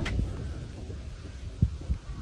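Low rumble with one dull thump about one and a half seconds in and a fainter one just before the end.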